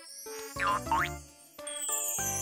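Short cartoon-style transition jingle: bright musical notes with a boing effect about half a second in, its pitch dipping and rising twice, and a high swish sweeping up and then down.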